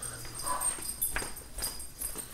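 Faint cries of a house pet, with a single knock about a second in.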